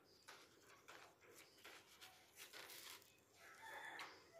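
Near silence, with a few faint scrapes and taps of a metal spoon in a plastic bowl of mashed sweet potato. Faint short pitched calls in the background near the end.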